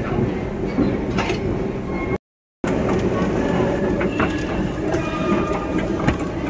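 Steady mechanical rumble of a long station escalator running, heard amid echoing station hall noise. The sound drops out completely for about half a second roughly two seconds in, then comes back as busier hall noise.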